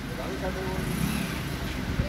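Steady background din of a busy shop, with people talking indistinctly.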